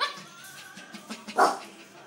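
Silkese puppy barking twice: a sharp bark at the start and a louder one about a second and a half in.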